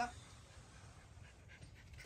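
A Bhote Kukur, a large Himalayan mountain dog, breathing softly, faint over a quiet outdoor background.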